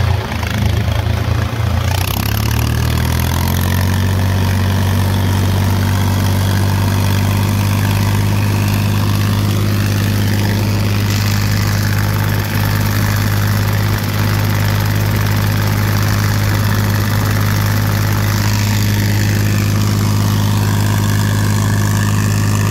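Tractor engine picking up revs over the first few seconds, then running steadily at working speed while driving a fertiliser spreader across the field.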